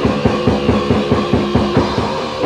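Raw, lo-fi death metal from a 1987 cassette demo: a fast drum-kit beat, about seven hits a second, under sustained distorted guitar chords.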